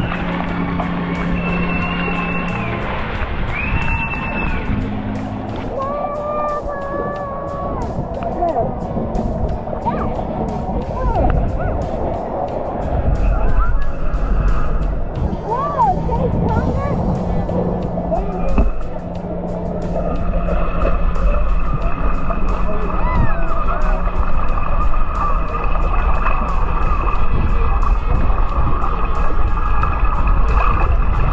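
Shallow sea water sloshing around wading legs and at a camera held near the surface, with voices in the first few seconds. From about two-thirds in, a steady motor hum joins the water sound.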